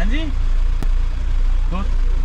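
Mahindra Thar's engine idling, a steady low rumble heard from inside the cabin.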